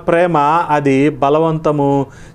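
A man's voice talking without pause, in a preacher's drawn-out delivery.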